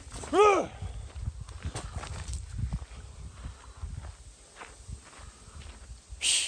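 Footsteps crunching on a loose gravel and rock trail, with a single loud cry about half a second in that rises and then falls in pitch.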